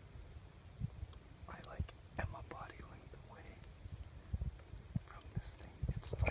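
Hushed human whispering, heard about one and a half to three seconds in and again near the end, over scattered low thumps and a few faint clicks.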